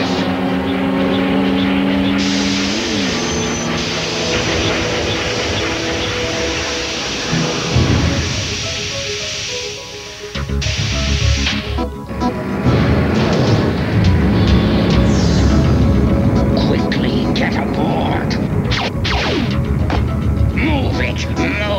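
Animated action-cartoon soundtrack: dramatic music with sound effects laid over it. A long rushing hiss runs through the first half, then heavy low rumbling with booms from about the middle on, louder in the second half.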